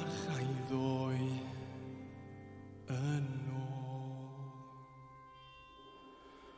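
A male voice sings long held notes over soft piano and cello accompaniment in a slow ballad. A new sung phrase enters about three seconds in, and the music dies away to a quiet held chord near the end.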